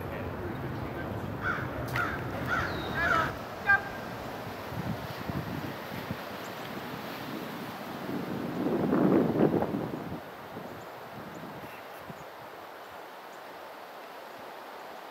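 A crow caws about five times in quick succession over a steady low rumble of street traffic. Later a brief, louder swell of rushing noise rises and fades.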